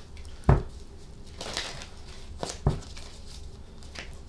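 A deck of tarot cards being shuffled by hand: soft card rustling with a few short knocks, the loudest about half a second in and two more close together about two and a half seconds in.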